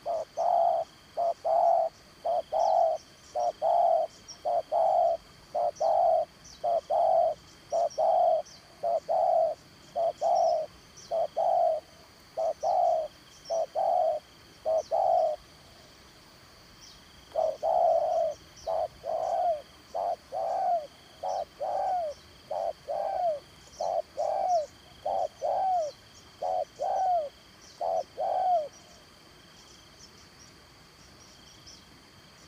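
Spotted doves cooing in a long run of short, even coos, about two a second. The run breaks off for a couple of seconds around the middle, then starts again and stops shortly before the end.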